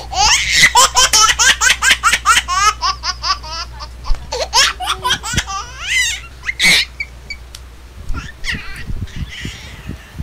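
A group of young people laughing hard together, in rapid high-pitched bursts that run for about seven seconds and then die down to a few scattered chuckles.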